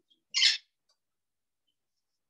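A pet bird calling once: a single short, high call about a third of a second in.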